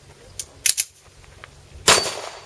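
Handgun shot: one loud, sharp crack near the end with a ringing echo after it, preceded about a second earlier by a few quieter sharp cracks.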